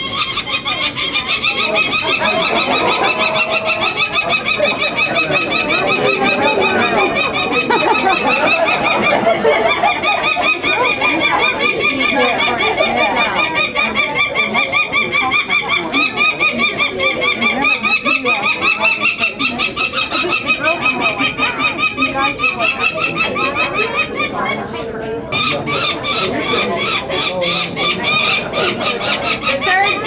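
Peregrine falcon nestlings (eyases) giving loud, rapid, repeated harsh cries without a break while they are handled for banding, dipping briefly about 25 seconds in. The chicks are agitated and excited at being handled by people.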